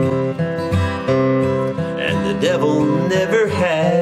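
Handmade steel-string dreadnought acoustic guitar, the Carolina Rose, strummed in chords as accompaniment to a song.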